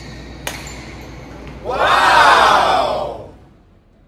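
A badminton racket smacks a shuttlecock about half a second in. Then comes a loud, drawn-out shout from a player, lasting over a second and falling in pitch.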